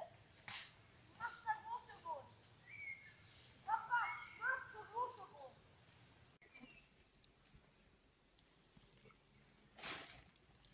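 Faint, distant high voices, like children talking to each other, in short bursts over the first half, then a few seconds of quiet woodland ambience. A brief rustle comes at the very end.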